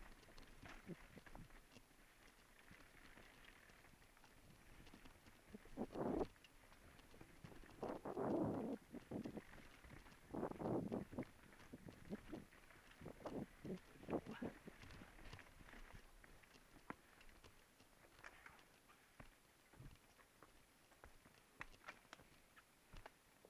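Mountain bike clattering over rocky, rooty singletrack as heard from a rider-mounted camera: an irregular run of knocks and rattles from tyres, frame and mount, with louder rough stretches about six, eight, ten and fourteen seconds in.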